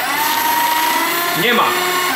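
Fellowes paper shredder starting suddenly and running steadily as it cuts up a sheet of paper fed into its slot.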